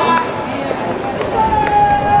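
High school baseball players shouting drawn-out calls during fielding practice, many voices overlapping. A couple of sharp clicks of bat or glove on the ball cut through about a second in and again near the end.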